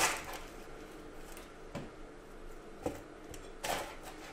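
Chef's knife knocking a few times on a wooden cutting board while an onion half is trimmed: three short, fairly quiet knocks spaced about a second apart, the last one near the end the loudest.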